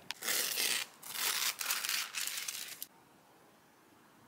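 Crinkling and tearing of the protective wrapping on a new laptop as it is pulled off and crumpled, in three rustling stretches that stop about three seconds in.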